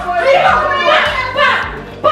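Excited voices shouting over background music, with children's voices mixed in.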